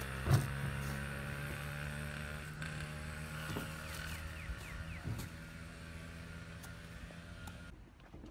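Small motorbike engine running at a steady pitch as it pulls away, fading gradually. There is a brief thump right at the start.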